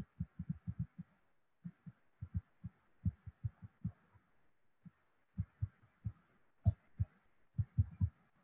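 Stylus writing on a tablet screen, picked up as irregular soft low thuds, several a second, with one sharper click about two-thirds of the way through.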